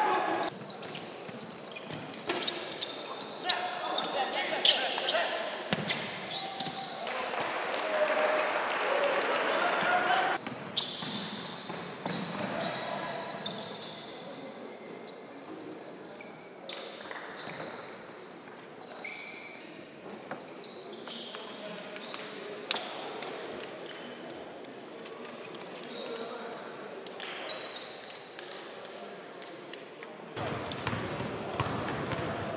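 Live game sound from a basketball court in a large hall: a ball bouncing, players' voices and court noise, changing abruptly several times where clips are cut together.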